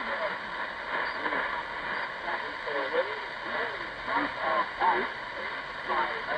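A Tecsun PL-680 shortwave receiver in upper-sideband mode on 12365 kHz, playing the VMC Australian marine weather broadcast: a distant voice heard through its speaker under steady static hiss.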